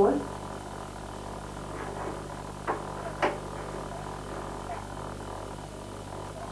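Steady low electrical hum and hiss, broken by two short knocks about half a second apart a little before the middle, with a few faint voice sounds.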